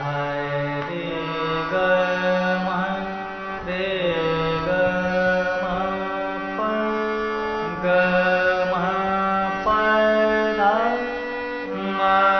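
Harmonium reeds played note by note in a four-note alankar, the pitch stepping up and down through short repeated runs of the scale. A man's voice sings the sargam note names along with the keys.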